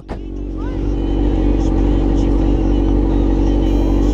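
Motorcycle engine running steadily under way at a constant pitch, growing louder over the first second and then holding, with a deep rumble beneath it.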